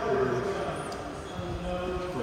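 Indistinct voices of people talking in a large, echoing hall, loudest near the start.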